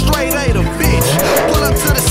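Hip-hop beat with vocals, overlaid with a car tyre-screech sound effect that swells about a second in.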